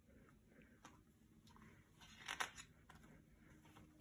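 Near silence with faint rustles, and a brief soft rustle a little over two seconds in as a picture book's page is turned.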